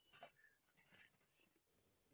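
Near silence: room tone, with a faint sound trailing off at the start and a couple of faint, brief sounds in the first second.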